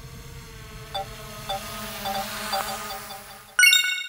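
Outro music: soft, steady tones with gentle struck notes about every half second, then a loud, bright chime rings out near the end.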